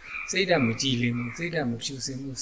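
A man's voice speaking Burmese in steady, continuous talk: a Buddhist monk's recorded dharma sermon.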